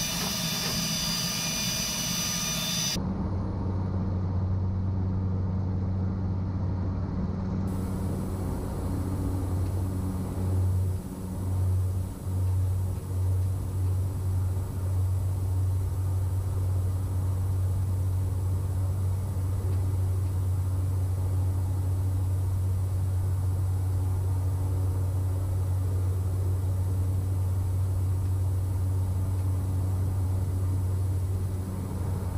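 Cessna 208 Caravan's single Pratt & Whitney PT6A turboprop and propeller running at climb power as heard in the cockpit: a steady low drone that sets in about three seconds in after a brief hiss. The drone wavers in loudness for a few seconds about a third of the way through, then holds steady.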